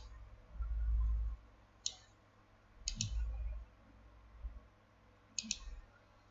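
Computer mouse button clicking: a single click about two seconds in, then a quick double click near three seconds and another near the end. Between them come low rumbles, the loudest about a second in.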